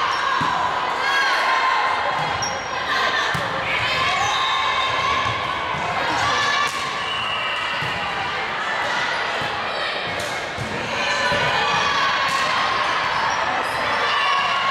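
Volleyball rally in a gymnasium: repeated thumps of the ball being hit, with players and spectators shouting and calling throughout, echoing in the hall.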